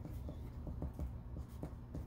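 Quiet writing on paper in a small classroom while students work a problem: light scratches and irregular ticks of pen or pencil strokes over a steady low electrical hum.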